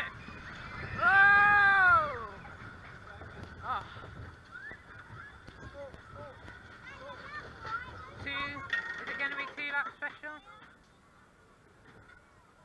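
Riders on a mine train roller coaster screaming and shouting. The loudest is one long scream about a second in that rises and then falls in pitch, with a burst of wavering shrieks near the end. Under the voices is the low rumble of the train on its track, which dies away shortly before the end.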